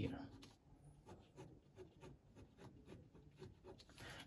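Pen scratching on paper in many short, quick, faint strokes, hatching a criss-cross pattern.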